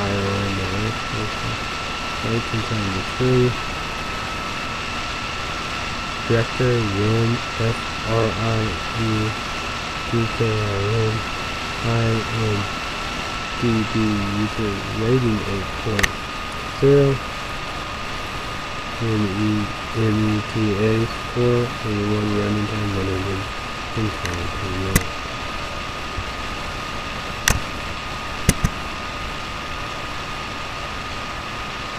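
A man's voice mumbling indistinctly in short phrases over a steady high-pitched whine. A few sharp clicks come in the last few seconds.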